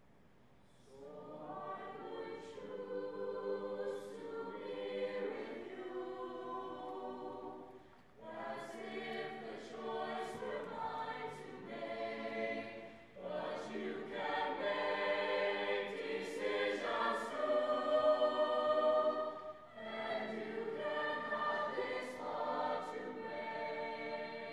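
A high-school mixed choir of boys' and girls' voices singing a song in harmony. The singing comes in phrases, with a few short breaks between them.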